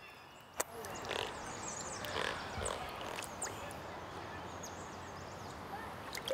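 Water splashing and running in shallow creek water, steady after the first second with a few louder splashes.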